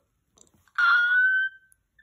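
A single high-pitched note from a young child, held for just under a second and rising slightly, coming out of near silence about a second in.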